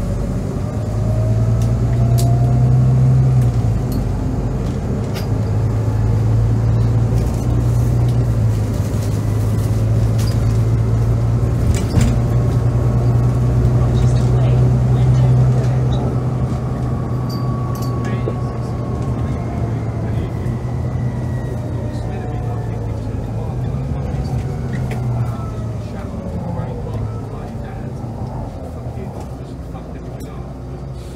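Volvo B9TL double-decker bus's 9-litre six-cylinder engine and driveline from inside the saloon, pulling hard under heavy acceleration. A deep steady drone with a whine that climbs in pitch in waves as the bus gains speed, easing off and quietening over the last few seconds.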